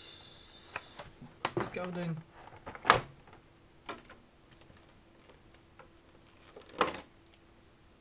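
Clear plastic packaging being handled: a crinkling rustle at the start, then sharp plastic clicks, the loudest about three seconds in and another near seven seconds. A brief voice sound comes around two seconds in.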